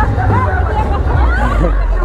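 A street crowd talking and calling out over one another, with a steady low rumble underneath.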